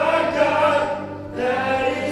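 Live church worship band: singers holding long notes over acoustic guitar, keyboard, bass and drums. There are two sung phrases with a short break in the middle.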